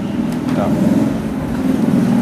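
A motor vehicle engine running steadily in the background, a low hum that wavers slightly in pitch about a second in.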